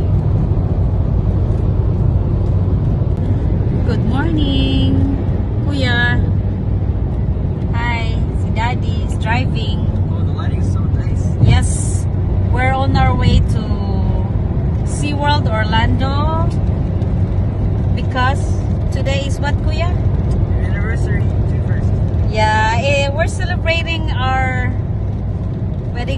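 Steady low road and engine rumble inside a moving car's cabin, with voices talking over it from about four seconds in.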